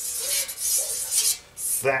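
A scribe scratching lines across a flat steel plate in three strokes, two long and one short, marking out the areas of a thigh plate to be shaped.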